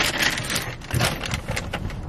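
Plastic shopping bag crinkling and rustling as it is handled, loudest at the start, with a dull knock about a second in.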